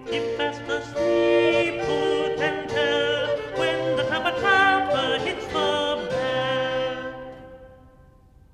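An early-music ensemble playing the closing bars of a traditional Elizabethan song in several parts, ending on a held chord that fades away.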